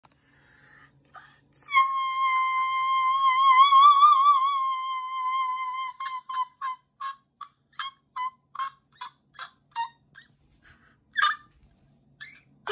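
A woman's voice holding one long, very high sung note that starts to waver with vibrato, then breaking into a run of short high 'ha' notes, two or three a second, with a louder one near the end.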